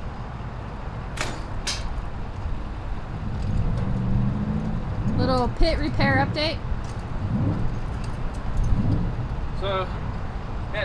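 Metal hand tools clinking twice, a little over a second in, over a steady low vehicle rumble, with voices in the background midway and near the end.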